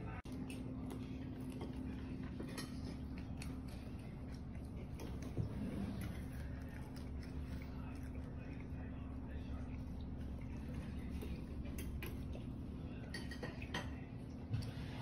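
A steady low hum under occasional light clinks and knocks of metal pans and utensils, with a small cluster of clicks near the end.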